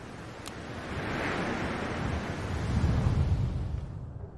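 A rushing, wind-like noise swells up over about three seconds, with a deep rumble near its peak, then fades.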